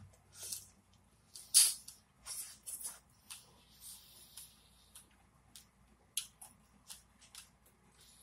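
A person chewing a strawberry close to the microphone: a string of short, sharp mouth clicks and smacks, the loudest about one and a half seconds in, then smaller ones at uneven intervals.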